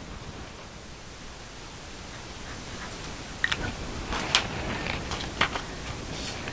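Steady hiss of room tone, then from about halfway a few soft clicks and rustles of hands handling a stretched canvas painting.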